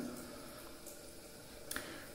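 Faint sounds of a small spatula scooping soft cream face mask out of a jar, with one light click near the end.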